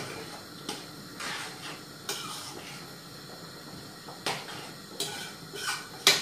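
A metal utensil clinking and scraping in a stainless steel bowl, with about seven sharp, irregular clinks.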